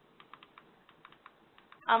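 Faint clicking of keys pressed one after another in an irregular quick run, paging back through presentation slides.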